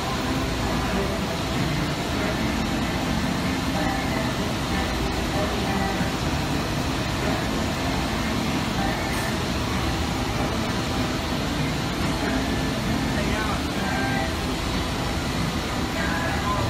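Steady industrial machine noise: a continuous hum and hiss that holds at an even level with no breaks.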